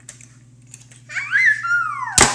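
A few light plastic clicks of toy cars on a plastic track, then about a second in a young child's loud, high-pitched squeal that rises and then falls in pitch.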